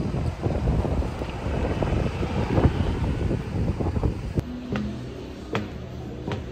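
Wind buffeting the camera microphone in a loud, uneven rumble. About four seconds in it cuts to a quieter sound with steady pitched notes and a few light ticks, like soft background music.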